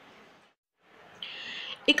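Faint hiss with a brief dropout to silence, then a short breathy intake of breath lasting about half a second, just before a woman's narration resumes.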